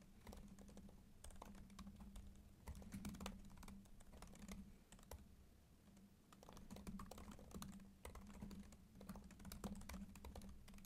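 Faint typing on a computer keyboard: quick runs of key clicks with short pauses between them, the longest about halfway through.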